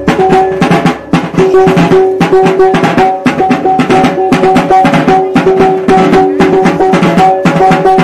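Maguindanaon tambul, the wedding drum beat, played live: a large wooden barrel drum beaten fast with sticks, over a repeating ringing note that sounds in short stretches again and again.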